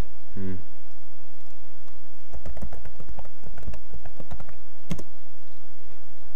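Typing on a computer keyboard: a quick run of keystrokes from about two to four and a half seconds in, then one sharper single click near the five-second mark.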